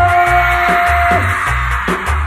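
Live cumbia villera band music with a steady, pulsing bass beat and a long held note that stops a little past halfway.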